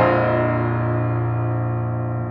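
Grand piano: a chord struck right at the start, held and ringing, slowly fading.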